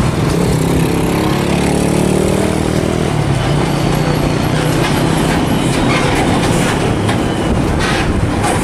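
Hino container truck with its trailer driving past, its diesel engine and tyres loud and steady. The engine note falls in pitch over the first three seconds, then holds level.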